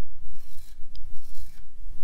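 Felt-tip dry-erase marker dragged across a whiteboard in a series of short strokes, rubbing and rasping as it rules the lines of a grid.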